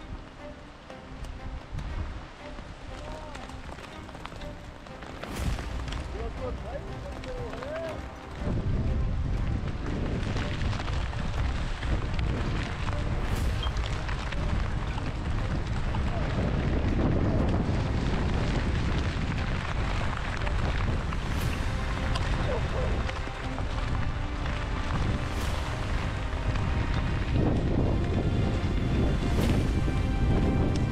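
Storm wind gusting hard across the microphone: a first gust comes in about five seconds in, and about eight seconds in it jumps to a loud, steady buffeting that holds to the end.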